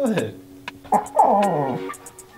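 Chow chow dog whining in two falling cries, a short one at the start and a longer one about a second in: it is impatient to be taken for a walk.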